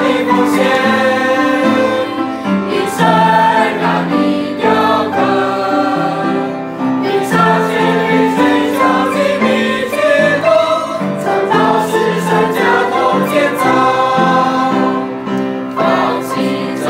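A group of young men and women singing a Mandarin Christian worship song together, in sustained melodic phrases.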